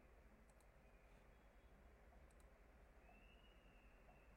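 Near silence: faint room tone with two quick pairs of faint computer mouse clicks, about two seconds apart.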